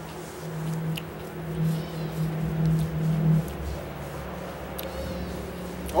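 A man's closed-mouth 'mmm' hum of appreciation, held steady for about three seconds and then trailing off, while he chews a bite of juicy raw elephant ear sweet pepper, with a few faint chewing clicks.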